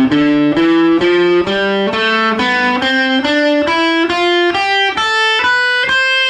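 Electric guitar playing the A minor scale in fifth position, one note at a time at about two notes a second, climbing steadily in pitch. It ends on a higher note held near the end.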